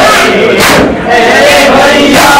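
Crowd of men loudly chanting a Muharram noha refrain together during matam (ritual chest-beating), with a brief break in the chant about a second in.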